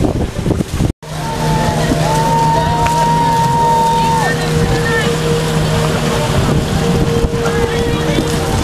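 Small outboard motor running steadily on an inflatable dinghy, with wind buffeting the microphone in the first second. The sound drops out for an instant about a second in, after which the engine runs on with splashing water and voices, including one long held call.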